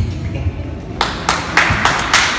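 A small group of people clapping, starting about a second in with a few separate claps that quickly fill in to steady applause.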